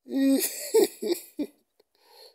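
A person laughing in a few short bursts, the first one the longest.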